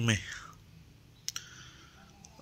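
A man's speech trails off at the start. Then comes the faint low hum of a small car's cabin moving slowly, with a single sharp click just over a second in.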